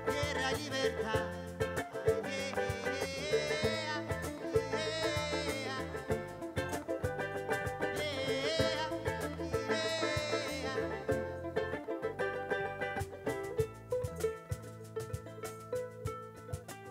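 A live band plays a short soundcheck number on violin, electric bass, cajon and a small strummed guitar. A wavering fiddle melody runs through the middle, over steady cajon strokes. The playing thins out over the last couple of seconds.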